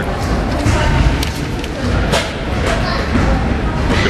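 Basketball game sound in a sports hall: a steady wash of crowd noise with a few sharp thuds of a basketball bouncing on the court.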